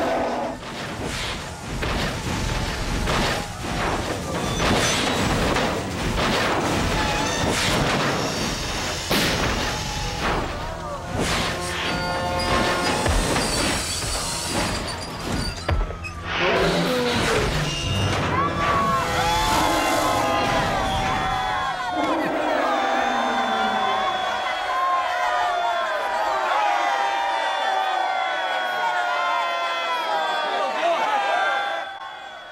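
Film action soundtrack: a rapid string of crashes and heavy thuds as a mechanical bronze bull charges and stamps, under dramatic music. From about halfway the impacts stop and held, gliding tones of music or massed voices take over.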